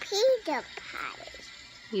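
A toddler's voice: a short, high-pitched vocal sound in the first half second, then a few fainter sounds before it goes quieter.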